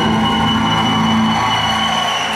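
Live rock band holding a final sustained chord, distorted electric guitars and bass ringing out together, with a steady high whine above it and crowd noise underneath.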